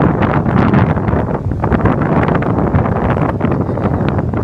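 Strong wind buffeting the microphone in a steady, loud rumble.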